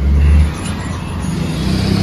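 Street traffic noise: a low rumble, strongest in the first half-second, then a steady low vehicle hum.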